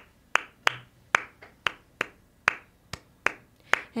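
One person's hand claps, soft and sharp, in a steady rhythm of about two a second, beating time as the lead-in to a song.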